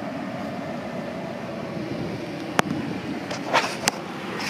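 Steady cabin noise of a 2002 Dodge Stratus with its engine idling and the air-conditioning blower running, heard from inside the car. Two sharp clicks come near the end.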